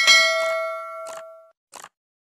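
Mouse click followed by a bright notification-bell ding sound effect that rings out and fades over about a second and a half. Then come short, soft swishes at a steady pace.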